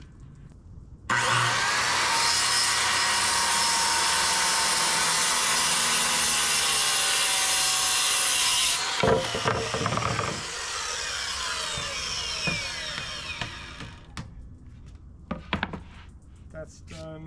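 Corded circular saw starting abruptly and cutting through a sheet of 3/4-inch MDF with a loud, steady saw noise for about eight seconds. A sharp knock comes as the cut ends, then the blade spins down with a falling whine that fades out about fourteen seconds in.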